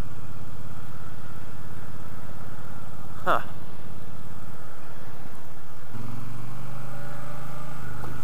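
Triumph Bobber Black's 1200cc liquid-cooled parallel-twin engine running at low revs with a steady low throb, its note changing about five to six seconds in.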